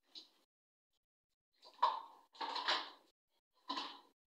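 Dishes and kitchenware clattering at a sink: a few short, separate knocks and rattles, the loudest about two seconds in.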